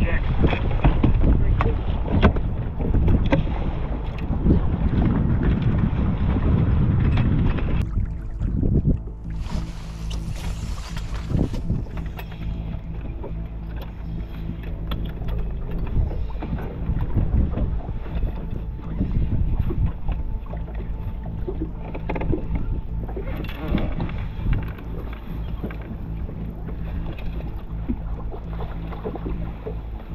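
Wind and water rushing around a bass boat for the first eight seconds, then a steadier, quieter low hum with water noise as the boat settles on the lake.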